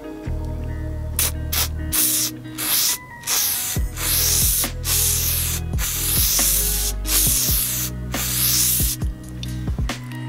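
An aerosol can of WD-40 spraying onto a tyre sidewall in about ten short bursts of hiss, with brief pauses between them. Background music with steady low notes plays under it.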